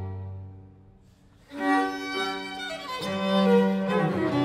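String quartet of two violins, viola and cello playing: a chord sounds at the start and fades, a brief hush follows, and about a second and a half in all four come back in loudly, the violins high over the cello.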